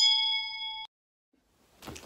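Notification-bell 'ding' sound effect: a click, then a bright chime of several steady ringing tones that cuts off suddenly a little under a second in.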